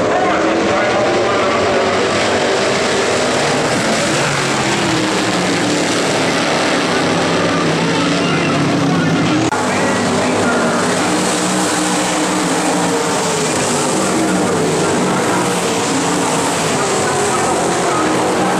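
Engines of several dirt-track race cars running at speed, loud and continuous, their pitch rising and falling as the cars pass. The sound changes abruptly about halfway through.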